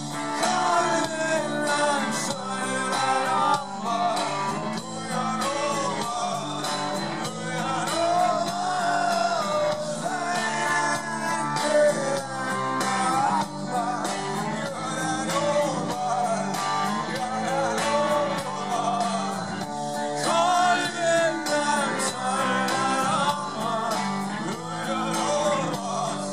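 Live rock band in an instrumental section: an electric lead guitar solo with bending, sliding notes over bass, drums and rhythm guitar.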